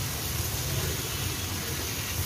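Onion-tomato masala frying in oil in a kadhai, sizzling steadily as it is stirred with a spatula, with a steady low hum underneath.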